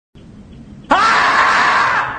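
A loud, drawn-out scream in a man's voice, starting suddenly about a second in with a quick upward swoop in pitch and then held raw and steady: the dubbed scream of the screaming-marmot meme.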